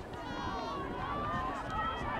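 Indistinct shouting and calling from several voices on a soccer field, overlapping one another, with one high, strained call in the first half-second.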